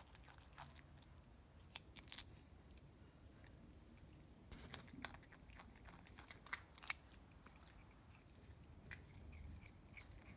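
A common brushtail possum crunching on a raw carrot: faint, scattered crisp bites with quieter chewing between them, the sharpest bite a little before seven seconds in.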